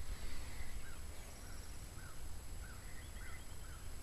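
Outdoor background with a bird repeating a short call about twice a second and a brief run of quicker, higher chirps from another bird, over a low steady rumble.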